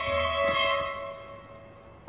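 Orchestral film score with held string chords, fading away over the second half.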